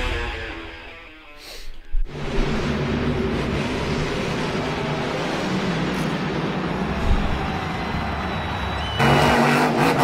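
Intro music fades out, then a monster truck's engine runs steadily in an arena, growing louder and choppier near the end.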